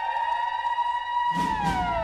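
A siren sound effect in a dancehall mix: a tone rises, holds high, then slides down. The bass and drum beat drop back in about halfway through.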